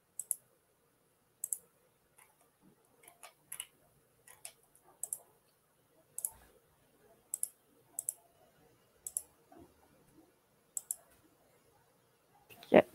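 Computer mouse clicking: about a dozen short, sharp clicks at irregular intervals, several of them in quick pairs like double-clicks.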